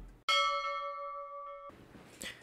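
A single bell-like chime, struck once and ringing with several steady tones as it fades, then cut off suddenly after about a second and a half.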